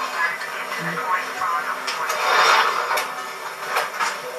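Indistinct voices in the manner of a TV news report, played back as part of a music video's intro, with two sharp clicks about two seconds apart.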